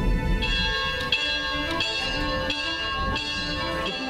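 A church bell rung by pulling its rope, striking about six times at an even pace, each stroke ringing on into the next, over background music.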